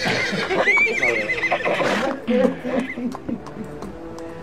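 A horse whinnying: one long, wavering neigh that begins about half a second in.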